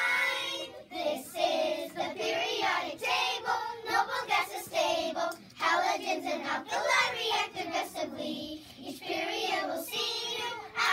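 A group of children singing together in unison.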